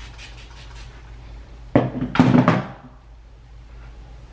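Plastic spray bottle misting water onto a section of synthetic curly wig hair: a quick run of faint sprays, then two louder sprays about two seconds in.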